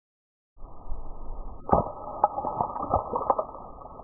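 Slowed-down audio of a small blast. A low, muffled rumble starts about half a second in, and through it comes a string of sharp cracks, the loudest first at just under two seconds and the last at about three and a half.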